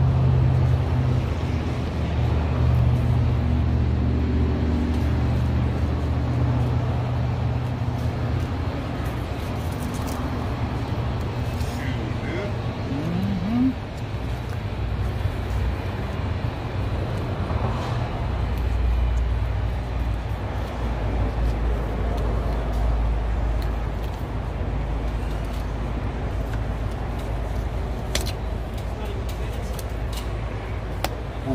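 Low steady hum of a vehicle engine running, with road-traffic noise; the hum drops to a deeper rumble about eighteen seconds in.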